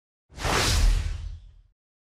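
A whoosh transition sound effect with a deep low rumble under it. It swells in about a third of a second in and fades away by about a second and a half in.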